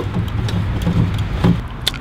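A car engine idling steadily, with a few faint light clicks.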